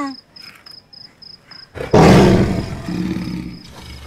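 A man lets out a loud, harsh roar about two seconds in, which fades away over the next two seconds. Crickets chirp steadily before it.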